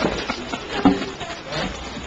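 Indistinct voices of people talking in a meeting room, with a few short sharp clicks or knocks.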